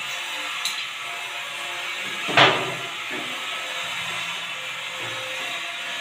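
Plastic toilet seat and lid being handled while fitted to a ceramic commode: one sharp clack about two and a half seconds in, over a steady hiss.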